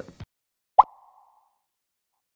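A single short pop sound effect about a second in, with a brief ringing tail.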